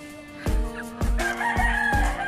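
Rooster crowing: one long call that starts about a second in, over background music with a steady beat.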